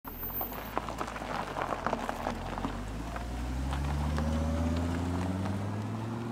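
Volvo V70R's turbocharged five-cylinder engine pulling away, its tyres crackling over loose gravel at first, then the engine note rising steadily as the car accelerates before levelling off near the end.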